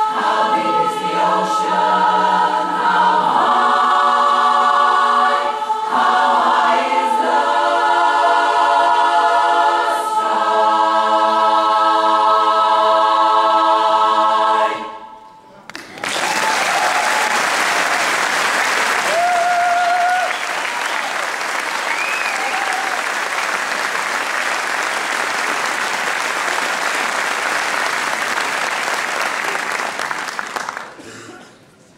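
Women's barbershop chorus singing a cappella in close harmony, finishing on a long held final chord that cuts off about halfway through. After a brief pause the audience applauds, with a few cheers over the clapping.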